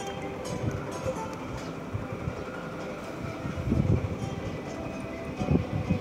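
A rotating arm ride with cheetah-shaped cars running, giving a steady mechanical rumble. Low swells of noise come at about four seconds and again near the end.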